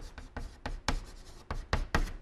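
Chalk writing on a blackboard: a quick run of short taps and scrapes, one for each stroke, as Chinese characters are written by hand.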